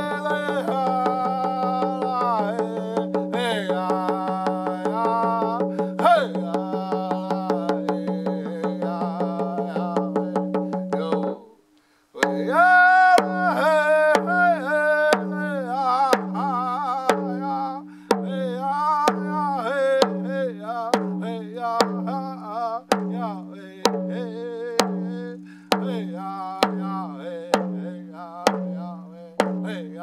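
A man singing a song while beating a hand-held rawhide frame drum. The drum is struck rapidly and steadily under the voice at first, both stop briefly a little before halfway, then the singing resumes over slower single drum strokes about once a second.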